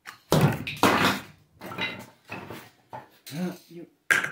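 A man's voice in short, loud, rough bursts and exclamations separated by brief pauses, with a short call near the end.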